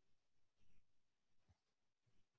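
Near silence, with one faint, brief sound a little under a second in.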